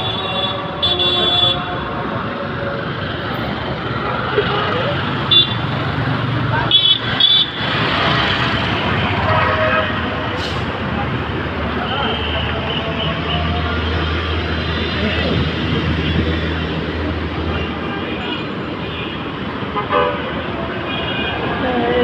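Busy road traffic: vehicles passing with a steady engine and tyre noise, and short horn toots about a second in and again around five and seven seconds in. A low engine drone swells in the middle as a larger vehicle goes by.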